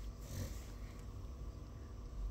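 A short breath close to a handheld microphone, about half a second in, over a low steady room rumble.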